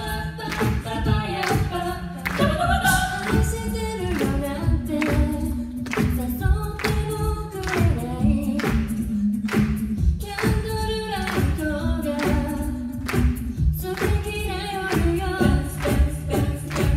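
A cappella group of women singing in close harmony into microphones, several voices holding and moving chords together, over a steady beat of about two strokes a second.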